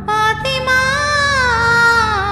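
A woman singing a Malayalam mappila song, holding long wavering notes that glide down about halfway through.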